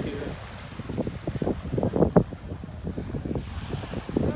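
Wind buffeting the microphone in irregular gusts over small waves washing onto a sandy beach.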